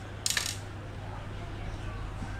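A short burst of metallic clinking about a quarter second in as a carbon fishing rod with a metal reel seat is handled and turned, over a low steady hum.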